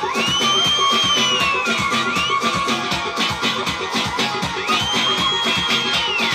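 Live music: a violin plays two long high notes over a fast, steady percussion beat. Each note slides up, is held, and the first falls away about two seconds in; the second begins near the end.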